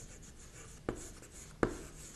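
Chalk writing on a blackboard: faint scratching strokes, with two sharp chalk taps about a second in and again near the end.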